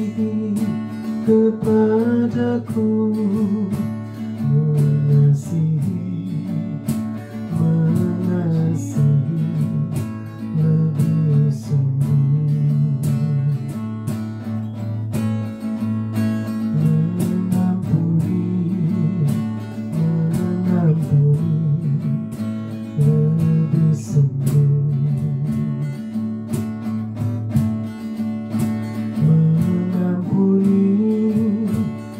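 A woman singing a worship song in Indonesian while strumming an acoustic guitar.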